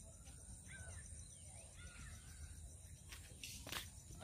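Quiet rural outdoor background with a few faint, short bird calls in the first two seconds, and a few soft clicks near the end.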